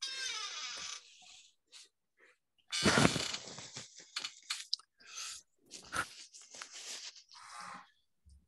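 Irregular crunching and rustling noises close to a microphone, with the loudest burst about three seconds in, followed by a string of short scrapes.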